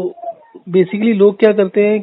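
A person speaking over a telephone line; the voice sounds thin and narrow.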